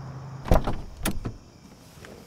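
Car door being opened: a loud latch clunk about half a second in, then a second clunk about half a second later, each followed by smaller knocks.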